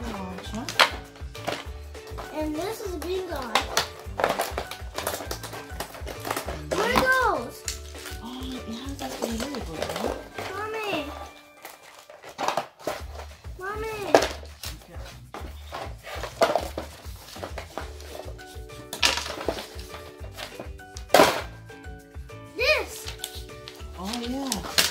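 Background music with a steady bass beat that drops out for about a second near the middle. Over it are voices and the clicks and knocks of plastic toy track pieces and a cardboard box being handled.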